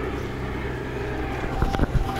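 Steady low outdoor rumble of wind on the microphone and nearby street traffic, with two or three sharp taps near the end.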